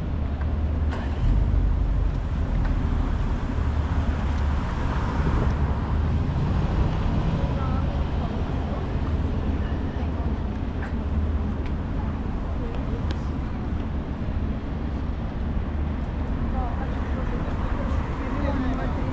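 City street ambience: a steady low rumble of passing road traffic, with passers-by talking faintly.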